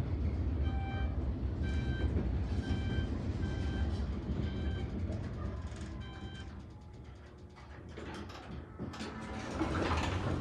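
DC gearless traction elevator car travelling up at speed, a steady low rumble with short electronic beeps about once a second. About seven seconds in the car slows and goes quieter, and near the end the center-opening doors slide open.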